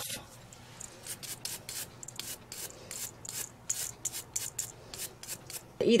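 Quick, quiet rubbing strokes across fingernails, about three a second, as the natural nails are prepped for press-on nails.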